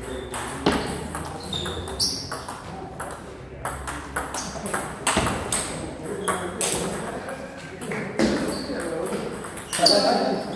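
Table tennis rally: the ball clicks sharply off rackets and table in a quick, irregular series of hits.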